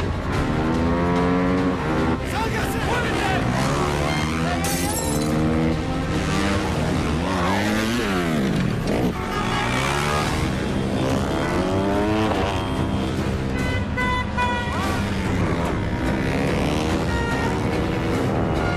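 Motorcycle engines revving hard through the gears, the pitch climbing and falling again and again, with a sharp drop and climb in pitch about halfway through.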